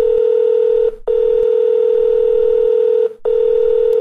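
Telephone line tone: one steady tone, broken by two brief gaps about a second and three seconds in, while a call waits to be answered.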